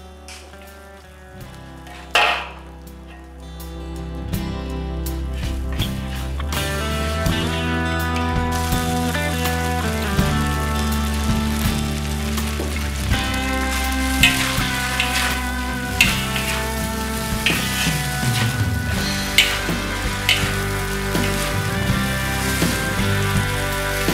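Rice vermicelli and vegetables being stir-fried in a wok: a sizzle that is quiet at first and grows louder after a few seconds as the heat is turned up. A metal spatula clinks and scrapes against the wok now and then. Background music plays throughout.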